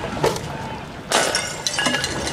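A thrown glass bottle, a Molotov cocktail, smashes on impact about a second in with a loud crash, followed by glass pieces clinking. A sharper knock comes just before it.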